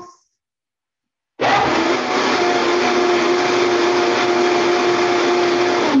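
Countertop blender running for about four and a half seconds on one last blend of thick carrot soup: it starts about a second and a half in, holds a loud, steady motor whine, and cuts off suddenly near the end.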